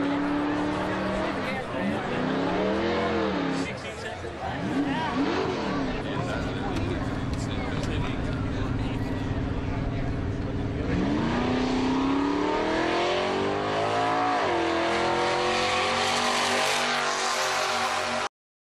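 Drag car engine at the line, revved in a few quick blips, held at a steady idle, then revved up hard about eleven seconds in, with another swell near the end.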